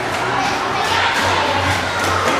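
A crowd of children shouting and chattering together in a large indoor hall.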